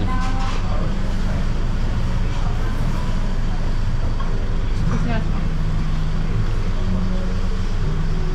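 Steady low engine hum of street traffic, with voices of other diners in the background.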